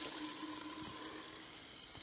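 Liquid nitrogen boiling around a copper pipe held down in a thermos jug: a faint hiss that dies away over the two seconds as the boiling subsides.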